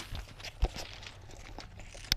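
Footsteps and shuffling on railway ballast gravel as people climb onto a stopped freight wagon, with one sharp knock a little over half a second in.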